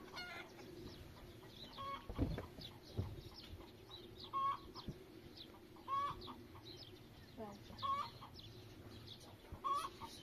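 Chickens clucking, a short call every second or two, over many faint high chirps. A soft thump about two seconds in.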